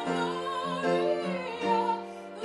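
A woman singing a sustained melodic line with vibrato, accompanied by an upright piano.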